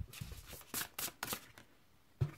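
Oracle cards being handled and set down on a cloth-covered table: several short card slides and taps in the first second and a half, then quiet.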